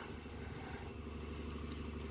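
Steady low background hum, with a faint high wavering whistle briefly in the middle.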